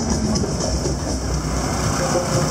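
Loud, steady street-parade din: a deep low rumble under a dense wash of noise, with no clear melody.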